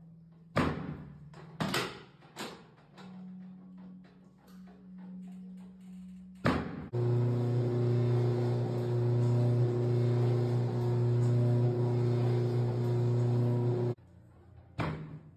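Three sharp cracks in quick succession during low-back chiropractic thrusts on a segmented drop table, then another single crack about six and a half seconds in. After that a loud, steady low hum of several held tones fills the rest and stops abruptly at the end.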